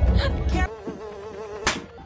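A fly buzzing with a thin, wavering hum, after a loud low rumble cuts off within the first second. A single sharp click comes near the end.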